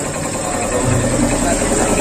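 An engine idling, a steady low rumble with no revving.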